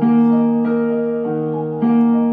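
Electronic keyboard played in a piano voice: a slow, gentle melody over held chords, with a new note struck about every half second or so and each left to ring.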